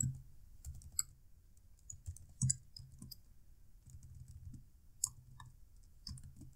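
Computer keyboard keystrokes: sparse, irregular clicks as code is typed, a few at a time with pauses between.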